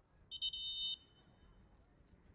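Referee's whistle: one short, shrill blast of about half a second, preceded by a brief chirp.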